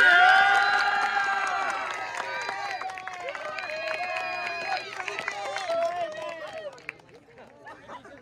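A small crowd cheering and yelling, starting suddenly and loud with several high voices held together for a couple of seconds, then breaking into shorter whoops that die down over about seven seconds.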